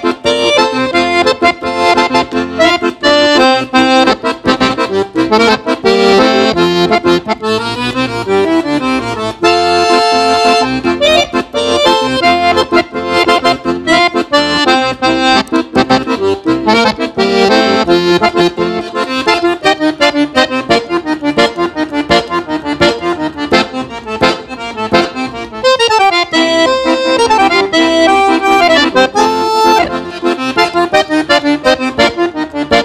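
Giustozzi piano accordion played solo in a vaneirão (gaúcho dance) rhythm. A melody runs on the treble keys over a steady pulsing bass-button accompaniment.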